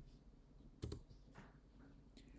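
Faint computer keyboard keystrokes, a few separate clicks with the clearest just before a second in, as a pasted access key is entered at a terminal prompt and submitted with Enter.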